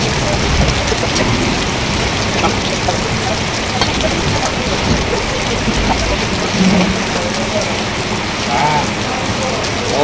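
Heavy rain falling steadily, a dense, even hiss.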